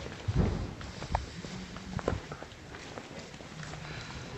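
Footsteps and a few knocks on a hard studio floor, with the loudest thump about half a second in.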